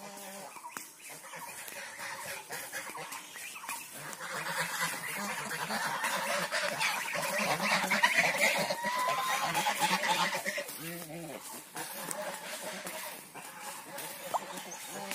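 A small flock of domestic waterfowl calling in a dense chatter that grows louder to a peak about eight seconds in, then fades.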